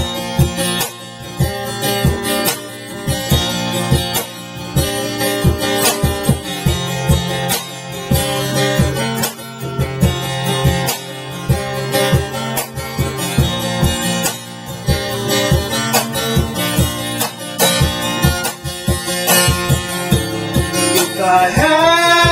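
Instrumental break of an acoustic song: acoustic guitar strumming chords with a cajon beating time. A male voice comes in singing near the end.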